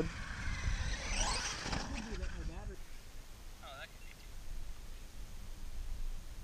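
Radio-controlled truck's electric motor whining up about a second in as the truck drives off across the sand, then fading with distance. A low wind rumble on the microphone runs underneath.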